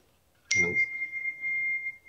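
A single steady high-pitched electronic beep that starts suddenly about half a second in and holds for about two seconds.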